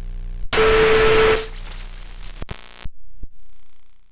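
Digital glitch and static sound effect: a low electrical buzz, then about half a second in a loud burst of static with a steady whining tone, dropping to quieter crackly noise broken by a few sudden cuts before it fades out.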